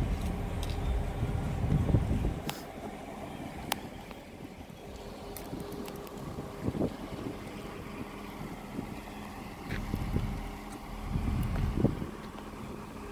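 Wind buffeting a phone microphone in gusts, strongest in the first two seconds and again near the end, over a faint steady hum and a few light clicks.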